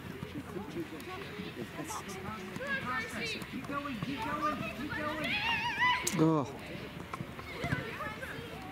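Indistinct shouts and calls of girls' voices around a football pitch during play, with a louder, wavering high-pitched call between about five and six seconds in.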